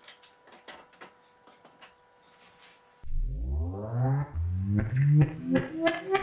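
Faint clicks of a USB flash drive being plugged into an LED disco-ball speaker, over a faint steady tone. About halfway through, music starts from its built-in speaker, opening with a rising sweep in pitch and running into a tune.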